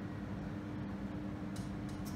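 Room tone: a steady low hum with an even background hiss, and a short higher hiss near the end.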